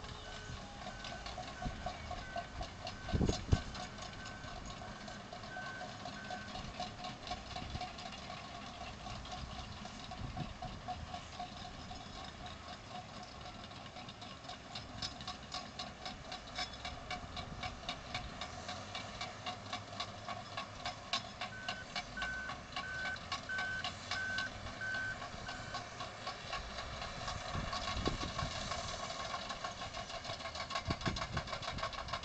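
Distant heavy earthmoving machines running, with a reversing alarm beeping in an even rhythm in two runs, one at the start and one past the middle, each growing a little louder. A single low thump about three seconds in is the loudest sound.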